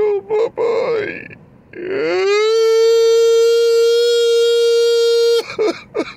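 A man crying: a few short sobs, then one long, high wail that rises and holds steady for about three seconds before cutting off suddenly, followed by more short sobs.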